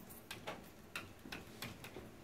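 Dry-erase marker writing on a whiteboard: a string of short, irregular taps and scratches as each stroke is made.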